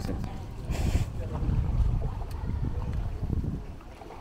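Wind buffeting the microphone, a low uneven rumble, with a brief hiss about a second in.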